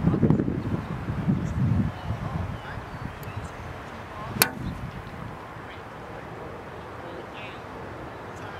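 A golf club striking a ball off turf: one sharp click about four and a half seconds in. The clubhead also catches the clear plastic compression board laid behind the ball, on the way back and on the way through.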